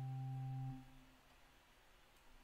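A steady, low drone tone held on one pitch stops about 0.8 s in and dies away quickly, leaving only faint room tone.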